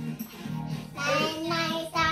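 A Korean song playing, with a child's high singing voice coming in about a second in over the steady accompaniment.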